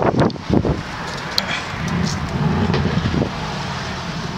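A car engine idling steadily, with wind noise on the microphone and a few soft knocks in the first second.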